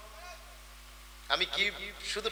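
A man's voice through a public-address system: the echo of a chanted line dies away, then about a second in he starts speaking again in Bengali with a rising and falling preaching delivery.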